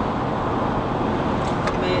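Steady road and engine noise inside a car's cabin while driving on a highway.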